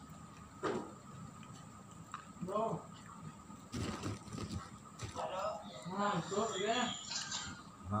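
Indistinct background voices, with a short crunchy noise about four seconds in, as when a crispy cracker is bitten.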